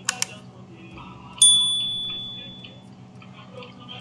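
Subscribe-button sound effect: two quick mouse clicks, then a single bright notification-bell ding that rings out and fades over about a second and a half.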